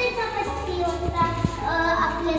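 A young girl singing a tune in held, gliding notes, with a couple of light knocks about a second in.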